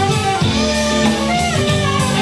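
Live band playing an instrumental passage: a tenor saxophone carries the melody over electric guitar, bass and a drum kit keeping a steady beat.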